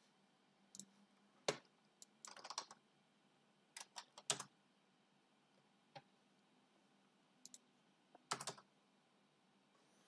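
Faint, scattered computer keyboard keystrokes and mouse clicks: single clicks and a few short clusters of taps separated by pauses, as a short command is typed into a web form.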